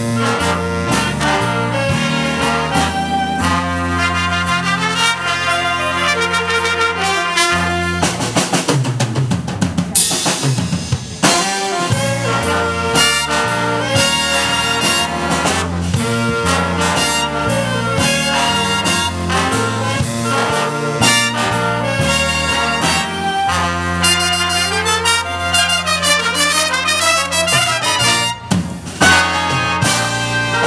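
Big band playing live: trumpets, trombones and saxophones over drum kit and bass. About eight to eleven seconds in, the drums and cymbals take over briefly before the horns come back in.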